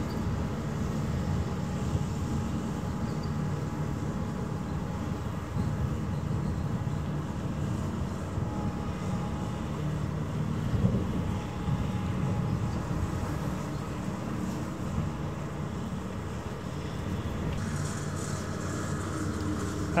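Catamaran passenger ferry's engines droning steadily as it passes, a low even rumble with faint steady hum tones.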